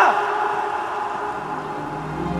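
A man's loud shouted call of a name trails off in the first moments, followed by sustained, held chords of background music.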